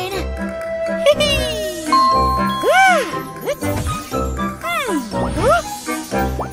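Children's cartoon background music with a steady bass beat. A sparkly chime effect comes about a second in, and wordless cartoon-character voice sounds rise and fall in pitch through the rest.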